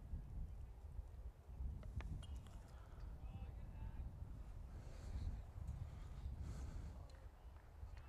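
Quiet outdoor ball-field ambience: a low, uneven rumble with faint, indistinct distant voices and a single click about two seconds in.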